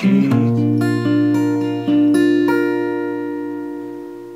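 Steel-string acoustic guitar, fingerpicked: a low bass note and a few plucked notes of a broken chord over the first two and a half seconds, then the chord is left ringing and slowly dies away.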